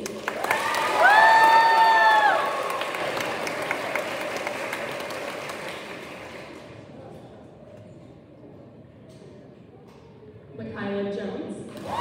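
Audience applauding in a gymnasium, with a couple of high 'woo' cheers in the first two seconds, the clapping then dying away over several seconds. A voice speaks briefly over the loudspeaker near the end.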